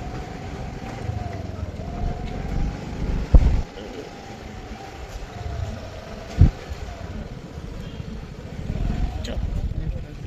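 Ride in an open rickshaw over a dirt road: a thin motor whine that wavers up and down in pitch over a steady rumble, with two loud thumps about three and a half and six and a half seconds in.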